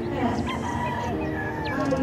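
Gamecock crowing: one long, drawn-out crow lasting well over a second.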